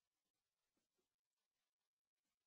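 Near silence: digital silence with no audible sound.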